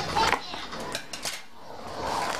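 Cardboard box and bubble wrap being handled: a few sharp clicks and rustles as the box flaps are moved and a hand presses into the bubble wrap.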